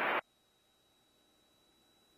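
Near silence: a steady rushing noise from the aerobatic plane's cockpit cuts off abruptly a fraction of a second in.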